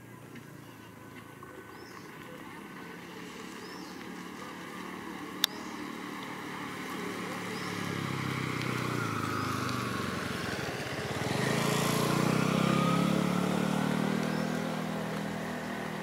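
Engine of a passing motor vehicle, growing steadily louder over about twelve seconds and then easing off a little. A single sharp click about five seconds in.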